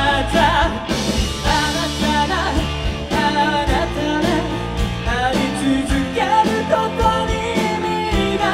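A rock band playing live: electric guitars and drums with a man singing the lead vocal line.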